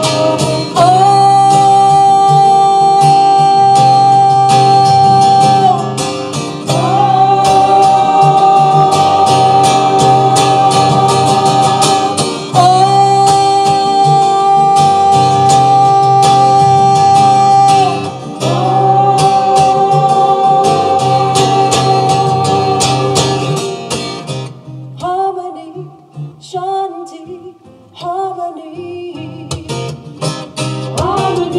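A woman singing long, held notes over a strummed acoustic guitar, echoing in a sandstone slot canyon. About three-quarters of the way through, the guitar stops and the singing goes on more quietly.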